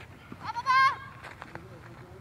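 A person's high, wavering shout of about half a second near the middle.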